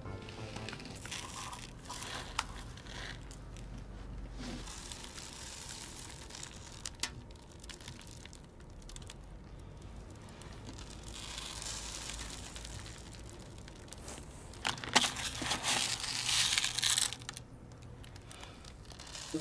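Crinkling and rustling of small hands at craft work, picking sprinkles out of aluminium foil trays and pressing them onto a glued pumpkin, with louder crinkly bursts in the last few seconds.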